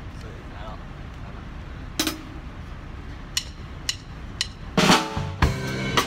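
Drum kit: a single sharp stick hit, then three light clicks about half a second apart, and about a second before the end a cymbal crash and drum strikes come in over a pitched music track as the drum cover starts.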